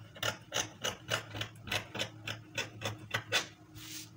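Scissors cutting through cloth in a rapid run of short snips, about three a second, as a curved sleeve edge is trimmed.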